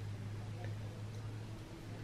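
Quiet room tone with a steady low hum and a couple of faint ticks.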